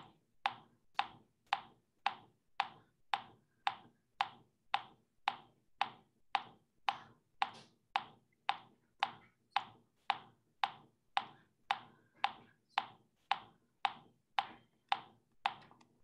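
A metronome ticking a steady beat, about two even clicks a second, with nothing else over it. It is keeping the quarter-note pulse for a sung four-bar exercise in 4/4.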